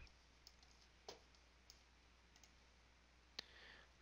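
Near silence with a few faint computer mouse clicks: one about a second in, one near the end, and fainter ticks between.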